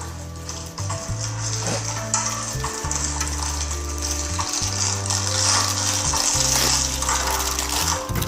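Maggi noodle blocks frying in hot oil, a steady sizzle that grows stronger in the middle and later part. Background music with a deep bass line plays underneath.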